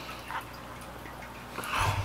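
Quiet eating sounds: a fork working through a bowl of rice and sauce, with a small wet click about a third of a second in and a louder, low-pitched sound near the end.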